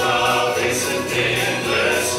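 Male gospel quartet singing in close harmony into microphones, a bass voice beneath the upper parts.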